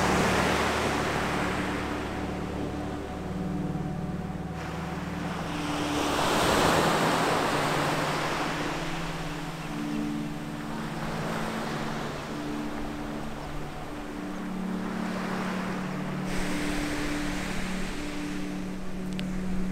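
Ocean surf washing onto a sandy beach, swelling loudest right at the start and again about seven seconds in.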